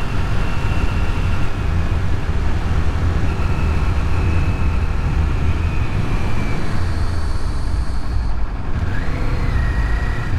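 2022 Kawasaki Z400's 399 cc parallel-twin engine running under way on the road, mixed with wind rush on the microphone. A short rise in pitch comes near the end.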